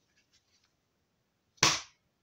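Papers being handled at a desk: a few faint small clicks, then one short, sharp sound near the end as a sheet is flipped or brought down.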